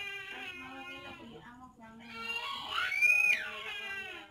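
A young child crying and whining in drawn-out, high-pitched wails, rising to a loud, sharply climbing wail about three seconds in.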